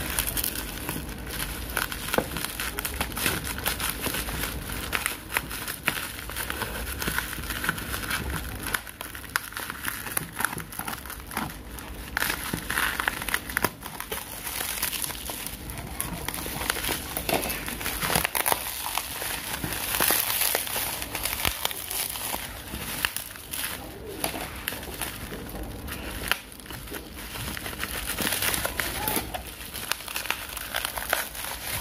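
Plastic bubble wrap crinkling and crackling continuously as it is handled, cut with scissors and pulled off a cardboard parcel.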